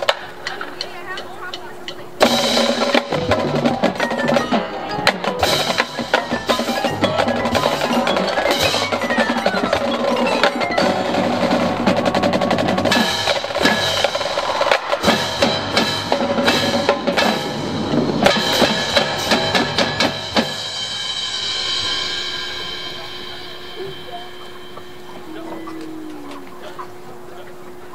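Marching band percussion playing a loud, busy passage on mallet keyboards and drums, coming in about two seconds in and stopping around twenty seconds in, after which the struck bars ring and fade out.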